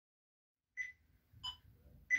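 Two faint, short pitched pings about two thirds of a second apart, the second lower than the first.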